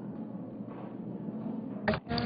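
Low, steady murmur of a large chamber with people talking quietly in the background. A sudden loud knock comes just before the end.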